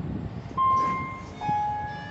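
Sigma lift's arrival chime: a higher electronic ding about half a second in, then a lower dong about a second later that rings out. This is the two-note signal that the car has reached a floor and its doors are about to open. A brief low rumble comes just before it.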